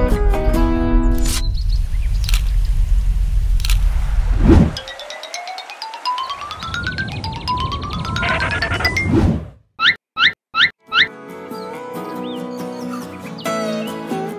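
Cartoon sound effects laid between stretches of acoustic guitar background music: a low rumble with a few sharp hits, a sweep dropping in pitch, then whistles gliding upward and four quick squeaky boings, after which the guitar music comes back.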